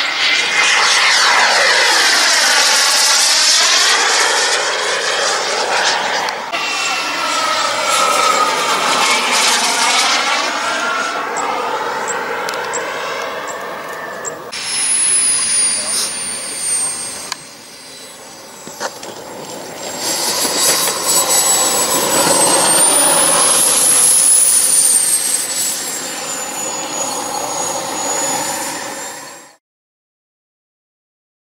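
Turbine of a radio-controlled model jet (a 14 kg-thrust Kingtech) running hard as the jet makes fast low passes, the noise sweeping up and down in pitch as it goes by. A high turbine whistle falls after a cut about halfway through, then rises and falls again as the jet passes, and the sound cuts off just before the end.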